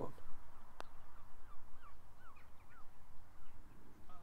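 A single faint click a little under a second in, the putter striking the golf ball, then a bird giving a quick run of short, falling chirps, over low wind rumble on the microphone.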